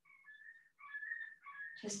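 Faint, high whistle-like calls in three short phrases.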